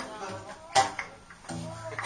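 Acoustic guitar accompanying a sung French chanson in a small room, with a sharp percussive hit about three-quarters of a second in and the singer's voice coming back in near the end.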